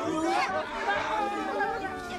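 Several voices exclaiming and talking over one another at once, a group chatter of overlapping speech.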